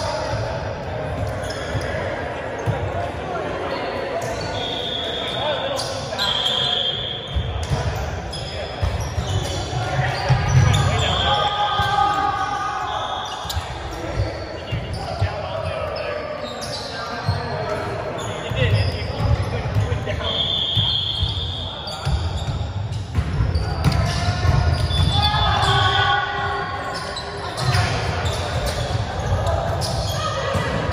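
Volleyballs being hit and bouncing on a hardwood gym floor, a run of irregular knocks that echo around a large hall, mixed with players' voices. Short high squeaks come several times.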